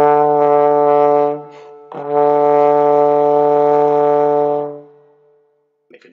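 Trombone playing two long held notes at the same pitch, with a short break for a breath between them about a second and a half in. The second note fades out near the end.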